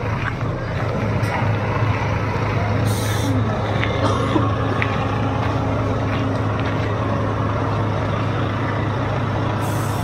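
Diesel engine of a double-decker bus idling with a steady low hum, and two short hisses of air from its air brakes, about three seconds in and near the end.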